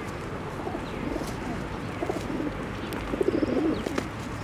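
Pigeon cooing in low wavering phrases, growing louder near the end, with a few faint high chirps.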